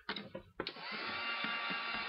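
A few small handling clicks, then a heat gun switches on about half a second in and runs steadily, a motor whine that rises briefly as it spins up over the fan's rush of air, drying the decoupage paste.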